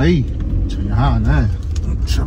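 Steady low rumble of a car moving slowly, heard from inside the cabin, with a brief voice sound about a second in.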